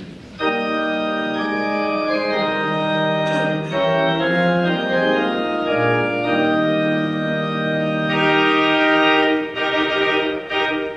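Organ playing the introduction to the closing hymn in sustained chords, starting about half a second in, with a low bass note entering around the middle.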